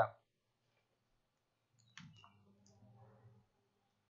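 The last word of a man's voice cuts off at the start, then quiet; about two seconds in come two quick faint computer-mouse clicks and a third softer one, followed by a faint low hum and rustle for about a second.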